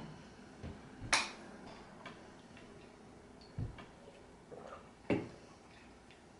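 Quiet room broken by a few scattered light clicks and knocks, the sharpest about a second in: shot glasses and drink cans being picked up and set down on a hard tabletop.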